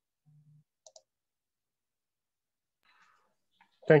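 Near silence, broken by two faint, quick clicks just before a second in. A man's voice begins right at the end.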